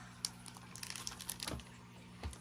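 Shrink-wrapped vinyl LP jacket handled and turned over in the hands: a scatter of light crinkles and clicks from the plastic wrap, thickest around the middle, over a faint steady low hum.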